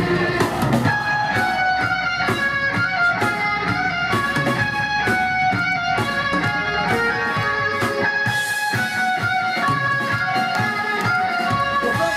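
Live rock band playing loud: electric guitars carrying a ringing melody over bass and drums.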